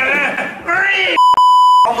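A man's voice followed by a single steady, high censor bleep of about two-thirds of a second that blanks out all other sound near the end.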